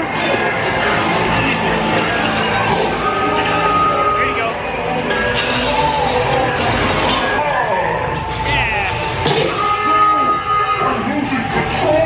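Soundtrack of an indoor laser-blaster dark ride: music with electronic beeps, held tones and zapping sound effects, and voices mixed in.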